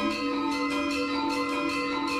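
Gamelan ensemble playing: bronze metallophones and gongs struck in an even run of about four strokes a second. A low note enters just after the start and rings on under the higher notes.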